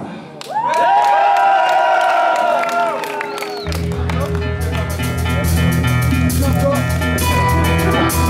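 Live rock band starting a song: sustained, bending pitched notes ring out for about three seconds, then the drums and bass crash in about three and a half seconds in and the full band plays on with steady drumming.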